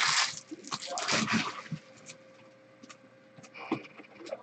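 A foil trading-card pack wrapper being torn open and crinkled by hand. It is loudest in the first second or two, then dies down to a few light rustles and clicks.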